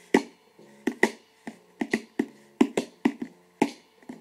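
Hand taps on the wooden body of a ukulele, used as a drum: sharp knocks in a syncopated beat, about two or three a second, each leaving a short ring of the strings.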